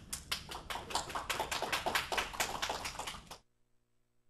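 Audience applauding: a run of quick, irregular claps that cuts off suddenly about three and a half seconds in.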